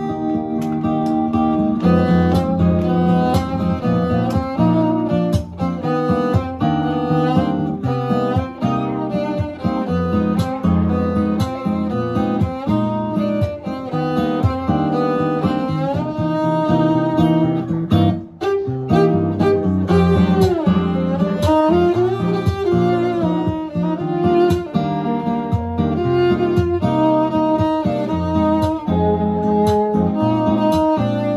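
Acoustic guitar and cello playing an instrumental duo: the guitar plays the chords while the bowed cello carries the melody. There is a brief break a little past the middle, after which the cello slides between notes.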